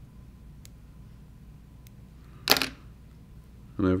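Fly-tying scissors snipping the stems out of a clump of CDC feathers to cut a V-notch: two faint clicks, then one sharp snip about two and a half seconds in.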